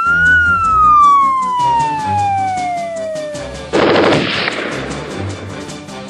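An electronic siren-style warning tone from an acoustic hailing device, sliding slowly down in pitch for a few seconds. About four seconds in, it is cut off by a short burst of machine-gun fire played through the same hailer, over background music.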